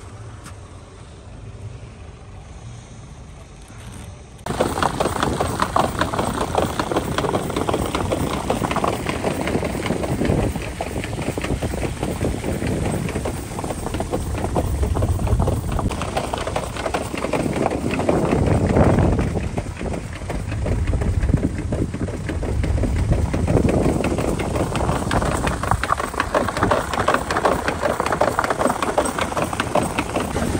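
A car fitted with snow chains driving on a snowy road, with steady road and engine noise and wind on the microphone that swells and eases. The first few seconds, with the car stopped, are quieter, then the loud driving noise comes in suddenly.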